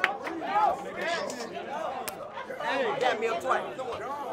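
Several people talking over one another: indistinct crowd chatter and reactions.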